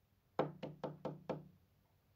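Five quick knuckle knocks on a bedroom door, evenly spaced, starting about half a second in.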